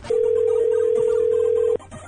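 Telephone ringback tone heard down the line: a single steady ring tone lasting about a second and a half that cuts off suddenly.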